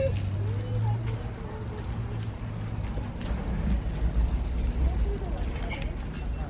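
Faint voices in the distance over a low, steady rumble.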